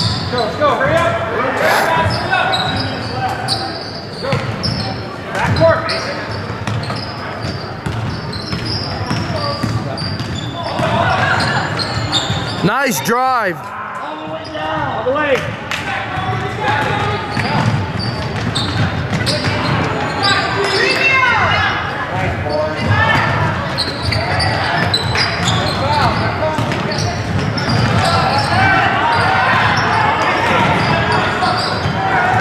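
Basketball game on a hardwood gym floor: the ball bouncing and dribbling, sneakers squeaking on the court, one loud squeak about halfway through, and voices of players and spectators calling out, all echoing in a large hall.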